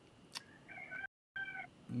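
A rooster crowing faintly over a video-call audio line, with a short audio dropout cutting the call in the middle; a single click comes just before it.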